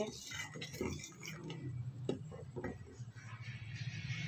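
A metal ladle clicking and tapping lightly against the side of a steel cooking pot a few times as simmering milk for kheer is stirred, over a faint steady low hum.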